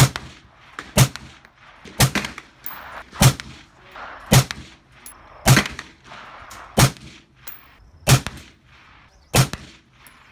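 Gunfire: nine single shots fired at a steady pace, about one a second.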